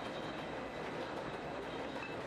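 Wine bottling line running steadily: conveyor and labelling machinery give a continuous mechanical rattle and hum, with faint steady high-pitched tones above it.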